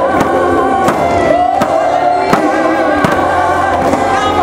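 Live worship music over a large outdoor PA: a woman sings with vibrato, backed by a band, with a sharp beat hitting about every three quarters of a second.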